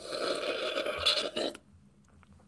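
A man slurping a sip of drink from a cup: one long noisy sip that stops about a second and a half in.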